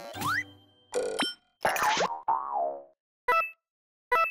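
Cartoon sound effects for a bouncing character: springy boings and quick rising glides, then a falling comic tone about two seconds in. A short chiming beep comes near the end.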